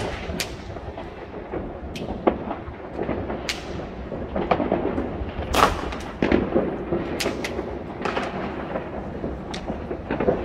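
New Year's Eve fireworks across a city: a continuous distant rumble of bangs and crackles from many rockets and firecrackers, with sharper cracks scattered throughout and a louder bang a little past halfway.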